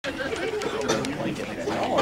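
Indistinct chatter of a small audience talking among themselves, with no clear words.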